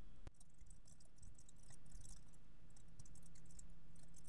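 Typing on a computer keyboard: quick runs of light keystrokes, with one sharper click just after the start.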